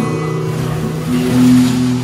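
Acoustic guitar accompaniment, chords ringing and held steadily with no singing, over a rushing hiss.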